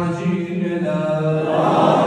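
A man chanting a supplication into a microphone, one drawn-out melodic line on long held notes. Near the end a louder rush of noise swells over the voice.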